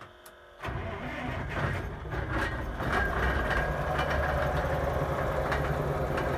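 LiAZ-677 bus's V8 petrol engine starting: it catches about two-thirds of a second in, then settles into a steady idle that grows louder over the next couple of seconds. Its air compressor is charging the brake and suspension air receivers.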